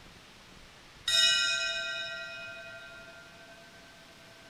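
A bell struck once about a second in, ringing out and slowly fading over about three seconds. It is rung at the Mass as the priest takes communion from the chalice.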